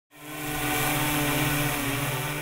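A steady mechanical hum with a few fixed low tones over an even hiss, fading in at the very start.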